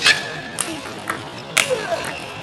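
Table tennis ball hits: a sharp click of the celluloid ball at the start and another about a second and a half in, as a rally winds down.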